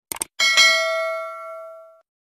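Sound effect of a mouse double-click followed by a single bell ding that rings out for about a second and a half and then cuts off suddenly: the notification-bell sound of a subscribe-button animation.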